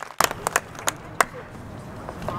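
A few scattered hand claps from a small crowd, about half a dozen separate claps in the first second, then a faint steady background.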